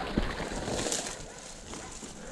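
Footsteps and rustling through dry grass and brush, with small twig snaps and crackles.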